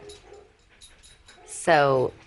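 A dog whimpering faintly, a few short soft whines.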